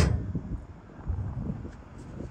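Wind rumbling on the microphone, an uneven low buffeting.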